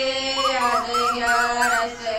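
Asian koel calling: a series of five short wavering notes, each a little higher than the last, over held notes of bhajan music.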